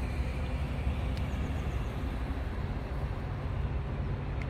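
Steady low rumble of vehicle engines and outdoor background noise, unchanging throughout.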